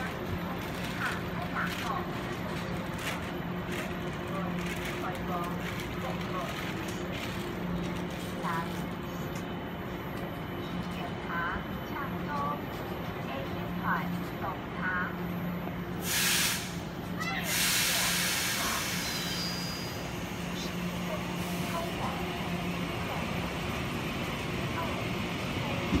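A standing Taiwan Railways EMU900 electric commuter train hums steadily. A short sharp hiss of compressed air comes about 16 s in, and a longer air hiss runs from about 17 to 20 s, typical of air brakes releasing. Near the end, the noise of a second electric train, an EMU800, grows as it pulls in on the adjacent track.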